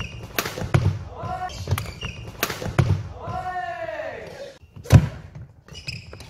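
Badminton rally in a large hall: sharp racket strikes on the shuttlecock, starting with a jump smash, among shoe squeaks and footfalls on the wooden court. The loudest strike comes about five seconds in.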